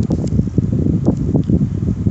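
Loud, irregular low rumbling and buffeting noise on the microphone, uneven from moment to moment, like air or handling hitting the mic.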